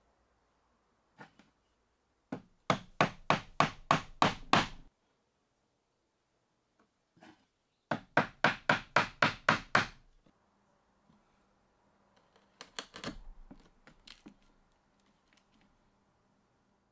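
Mallet striking a 15 mm mortise chisel, chopping into pine to square up drilled-out mortises: two quick runs of about eight blows each, about four a second, then a few lighter taps near the end.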